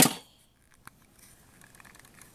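A sharp knock right at the start, then faint clicks and scratching as fingers pick at the tape sealing a small cardboard cosmetics box.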